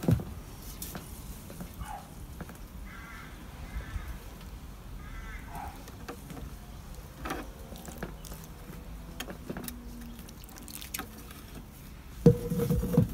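Water poured from a small enamel jug trickling and pattering onto the soil of seed trays, with a few faint clicks and knocks.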